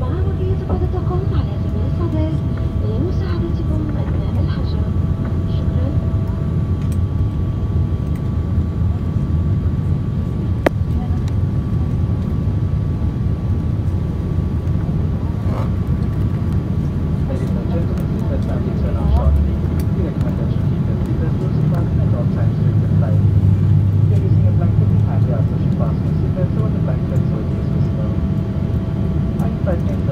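Steady in-flight cabin noise of a Boeing 787-8 heard from a window seat over the wing: a deep, even roar of the jet engines and airflow, with a few faint steady tones over it.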